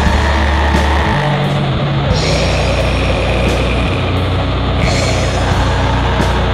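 Black/doom metal played at full tilt: a dense wall of distorted guitars over bass and drums, the low bass notes changing every second or two.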